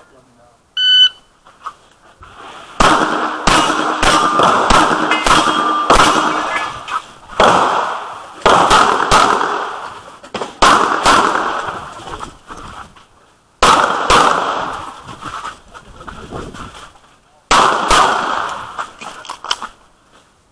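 An electronic shot timer gives one short beep about a second in. A semi-automatic pistol then fires a long string of sharp shots, mostly in quick pairs with short pauses between groups, each shot echoing.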